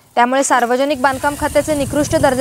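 A news narrator's voice speaking continuously, with a low rumble coming in underneath about a second in.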